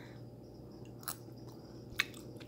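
Faint sounds of a person taking a mouthful of pad thai noodles and chewing, with a small click about a second in and another at the end, over a low steady hum.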